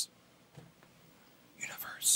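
Near silence in a pause in talk, then a short breath drawn in by the man at the microphone near the end.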